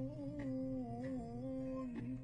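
A voice humming a slow, wordless melody in long held notes that bend gently, part of a vocal background track.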